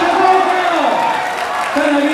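A man talking, with crowd noise behind him.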